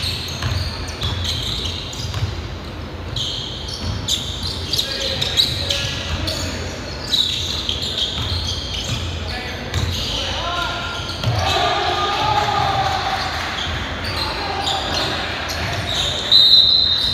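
Basketball game on a hardwood gym floor: a ball bouncing with repeated low thumps and short high squeaks of sneakers on the court, with players' distant voices.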